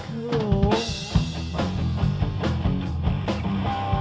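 Live rock band playing an instrumental passage: a drum kit with kick and snare, electric bass and electric guitar, with no singing.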